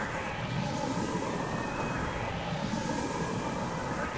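Harsh noise/drone electronic music: a dense, continuous wall of noise with faint steady tones, and a hissing upper band that sweeps back up in the second half, like a passing aircraft.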